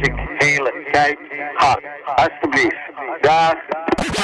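Filtered, thin-sounding spoken vocal sample in a breakdown of a gabber hardcore track. The kick drum drops out a moment in, and short voice phrases carry on alone over a faint held tone.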